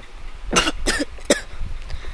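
A person coughing: three short coughs, starting about half a second in and coming roughly a third of a second apart.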